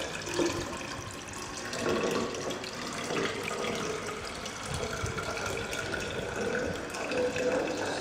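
Distilled water poured in a steady stream from a plastic jug into a tall glass sedimentation cylinder holding a soil suspension, filling the cylinder up to the 1000 mL mark for a hydrometer test.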